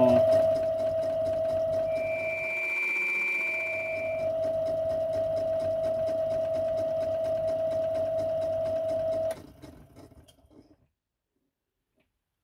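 Small metal lathe running with a steady motor whine while the tool takes a very light, intermittent cut on the edge of a copper tubeplate disc, catching only part of each turn because the disc is not yet cut round all the way. A higher ringing tone sounds for about two seconds a couple of seconds in. About nine seconds in the lathe is switched off and runs down to silence.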